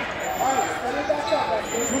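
Speech: several people's voices talking and calling out over one another, with a man saying "two" at the very end.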